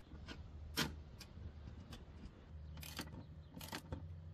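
A few faint, sharp metallic clicks and clinks of a socket wrench and bolt as an oil catch can's mounting bracket is fastened in place.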